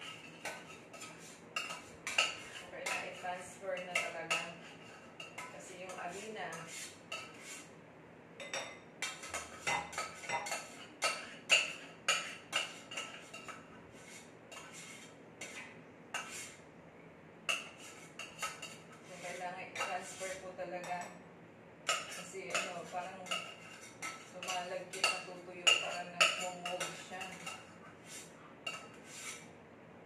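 A metal utensil scraping and clinking against a stainless steel saucepan as thick cheese sauce is scraped out into a bowl, in irregular repeated knocks and scrapes.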